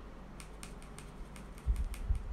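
A quick run of light clicks, a paintbrush tapping and working in a watercolour palette while mixing sap green, with a low thump near the end.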